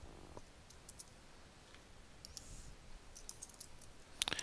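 Near silence with a few faint, sharp computer clicks, scattered over the seconds, as code is copied and pasted.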